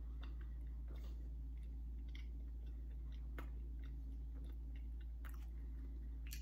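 Faint chewing of a soft-baked cereal bar, with soft, irregular mouth clicks over a steady low hum.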